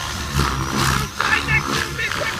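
Radio-controlled 3D aerobatic helicopter in flight, its rotor noise surging in whooshes several times as it is thrown through hard manoeuvres.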